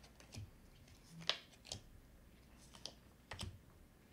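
Tarot cards being handled and laid down onto a spread: a few faint, irregularly spaced clicks and taps as cards are flicked from the deck and set in place.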